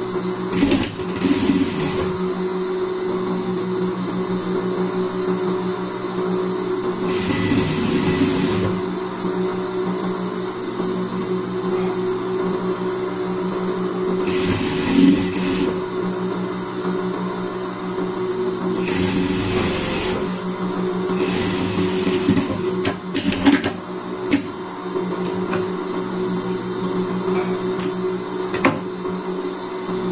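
Industrial single-needle lockstitch sewing machine running in short bursts of one to two seconds, about six times, as a seam on fleece fabric is sewn, over a steady hum. A few sharp clicks come about two thirds of the way through.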